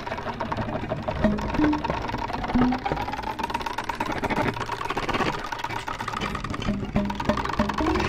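Violin with live electronic effects in a free improvisation: a dense, fast-pulsing texture under a tone that slowly rises and falls, with short low notes scattered through it.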